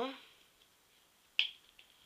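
A single sharp click about a second and a half in, from makeup packaging being handled.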